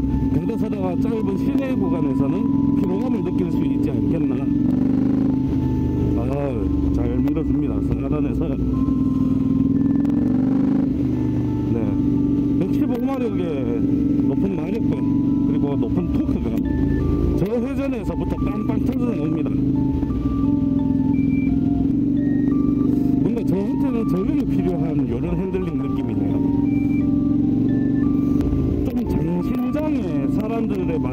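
A KTM 890 Duke's parallel-twin engine running at a steady road pace while riding, with a background music melody playing over it.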